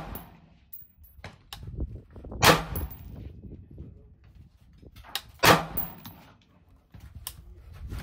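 Two sharp rifle shots from an Anderson AM15 Utility Pro AR-15 in 5.56, about three seconds apart, each with a short echo under the range's roof. A fainter sharp report comes near the end.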